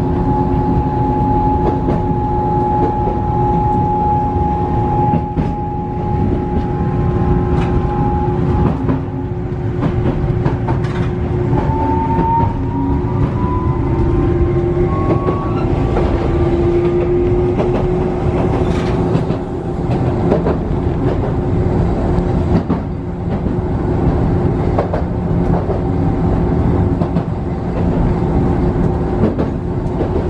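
Tokyu Setagaya Line tram (a 300 series car) running along its track, heard from inside the car: a steady rumble of wheels on rail with the traction motors' whine. The whine rises in pitch as the tram picks up speed, about twelve to seventeen seconds in. Sharp clicks from the wheels over rail joints come through now and then.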